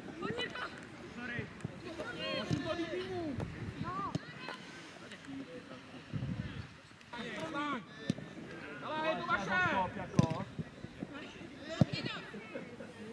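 Footballers shouting and calling to each other across an open pitch, with occasional sharp thuds of a football being kicked, one just before the end.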